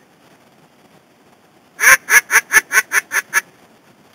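Duck call blown close by: starting about two seconds in, eight loud quacks in quick succession, each a little quieter than the last, in the falling cadence of a hen mallard call.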